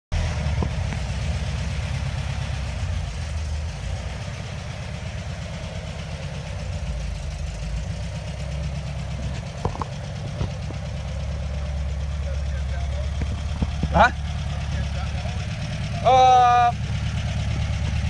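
Volkswagen Beetle's air-cooled flat-four engine running steadily at low revs as the car moves off slowly. Near the end comes a short, loud, steady tone that starts and stops sharply.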